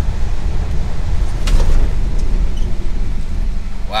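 Steady low rumble of tyre and road noise inside the cabin of a Tesla Model 3 Performance moving on a wet track, with a short sharp sound about one and a half seconds in.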